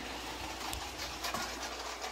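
Battery-powered LEGO train running along its plastic track: a steady whirr with a few faint clicks.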